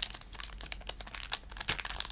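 Thin clear plastic wrapper of a trading-card pack crinkling in the hands as the cards are slid out of it: a dense run of small, sharp crackles.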